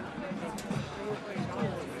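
Background chatter of voices from people around the field, with one short click about half a second in.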